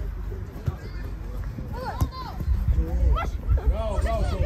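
Voices of players and onlookers calling out across a football pitch. There are short shouts about two and three seconds in, over a steady low rumble.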